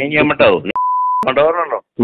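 A single steady, high-pitched censor bleep lasting about half a second, dropped over a man's voice on a phone-call recording, with his phone-quality speech just before and after it; the bleep masks an abusive word in the heated call.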